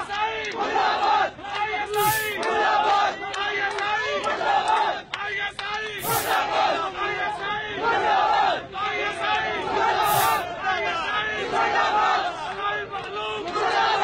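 A large crowd of men chanting slogans in unison, loud rhythmic shouts repeating about once a second: political slogans against the army. A short hiss cuts in every four seconds.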